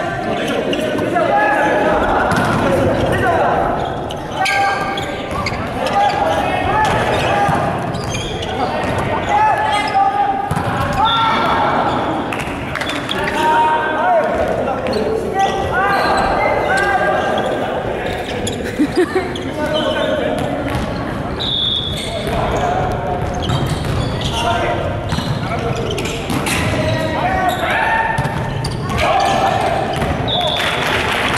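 Several players calling out and chatting across a reverberant gym hall, with a volleyball being struck and bouncing on the hardwood floor now and then.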